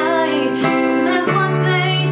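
A woman singing a slow ballad over a Yamaha digital piano accompaniment, her voice bending over held piano chords; a new, lower chord comes in about a second and a half in.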